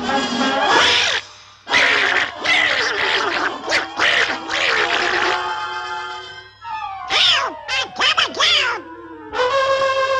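Donald Duck's classic angry squawking quacks over cartoon orchestral music, then a long falling whistle-like glide as he drops, ending in a steady held note from a horn near the end.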